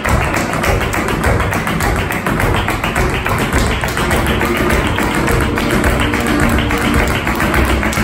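Live flamenco: guitar playing under a dense run of rapid percussive taps, kept up without a break.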